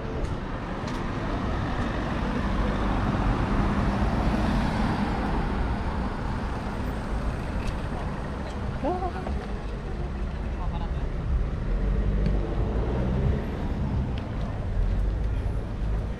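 Street ambience with road traffic passing; one vehicle swells and fades a few seconds in, over a steady low rumble. Voices of passers-by come and go.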